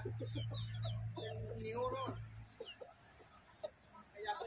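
Chickens clucking, with one longer drawn-out call a little after a second in, and small birds chirping high above them. Under them runs a low steady hum that stops about two and a half seconds in.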